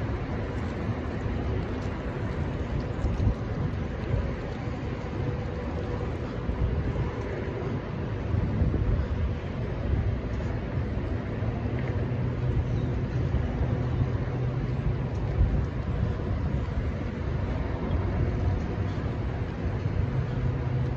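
Steady low rumble of road traffic mixed with wind on the microphone, with no distinct events.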